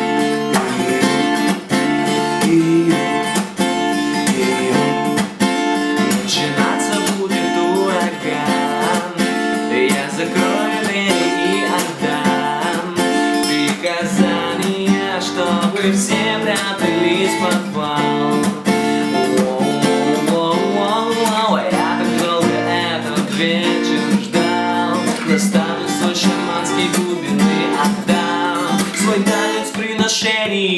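Ibanez PF15ECE acoustic-electric guitar strummed in a steady rhythm, with a man singing over it from about six seconds in.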